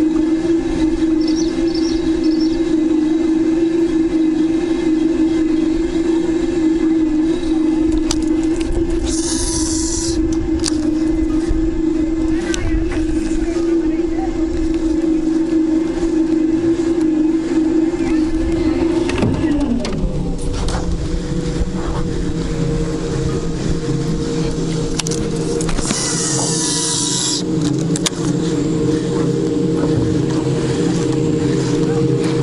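A small boat's outboard motor running steadily at one pitch, then throttled down about two-thirds of the way through, its note gliding down and settling lower.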